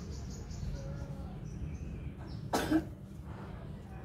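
A single short cough about two and a half seconds in, over a series of faint high chirps.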